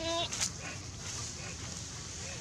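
A long-tailed macaque gives one short, level-pitched call at the start, followed by a sharp click about half a second in.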